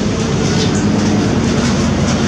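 Cabin noise of a moving MAN Lion's City G (NG323) articulated city bus: the diesel engine drones steadily under road and body noise. The drone rises slightly in pitch about half a second in.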